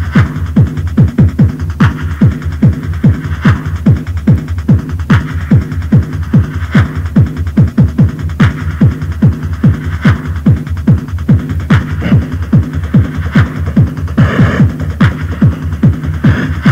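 Fast electronic dance music (techno) from a cassette recording, driven by a steady kick drum about two and a half beats a second, its pitch dropping on each hit. A brighter, hissing layer joins over the beat near the end.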